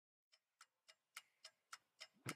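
Faint, evenly spaced clicks, about three and a half a second.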